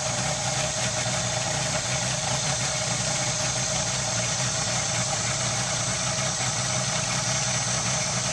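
A boat's outboard motor running steadily at low throttle, an even, unchanging engine hum.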